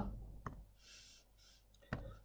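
Two faint short clicks about a second and a half apart, over a low steady room hum.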